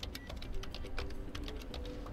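Keys on a MacBook Air M4 keyboard being typed in a quick, uneven run of light clicks.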